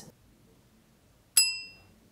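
A single bright, bell-like ding about a second and a half in, struck sharply and ringing out over about half a second. Near silence before it.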